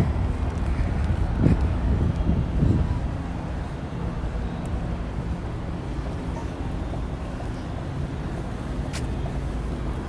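Steady low rumble of wind on the microphone over outdoor ambience, a little louder in the first three seconds, with one sharp click near the end.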